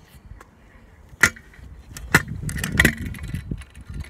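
Kick scooter on tarmac: two sharp clacks of the scooter striking the ground, about a second apart, then a low rumble of its small wheels rolling for over a second.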